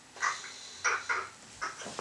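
Short rustles and clicks, about five in two seconds, from a motorcycle wiring harness and its plastic connectors being handled and shifted while searching for a part.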